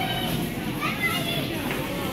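Indistinct background voices of other people talking, fainter and higher-pitched than the nearby voice, with a hollow room echo.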